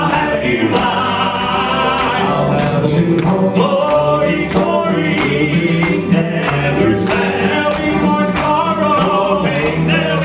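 Male southern gospel group singing in harmony through microphones, over instrumental accompaniment with a steady beat.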